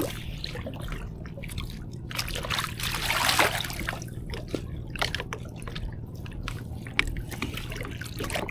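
Water trickling and dripping off a nylon gill net as it is pulled hand over hand out of the river into a small boat, with small splashes and ticks of the net; the water runs louder for a moment about three seconds in.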